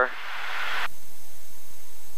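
Short burst of hiss from the cockpit intercom microphone, under a second long, fading to a low steady background.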